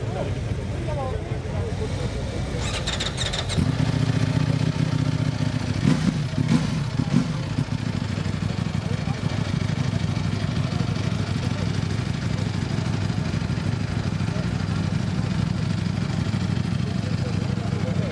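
2018 Ducati Panigale V4 S's 1103 cc V4 engine starting up about three and a half seconds in, blipped three times a few seconds later, then idling steadily.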